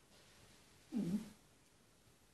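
A single short voice sound, a brief hum or murmur of under half a second about a second in, over quiet room tone.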